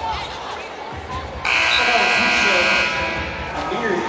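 Basketball arena's horn sounding one steady blast of about a second and a half, signalling a substitution at the scorer's table.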